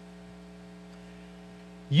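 Steady electrical mains hum, a low drone made of a few fixed tones. A man's voice comes in right at the end.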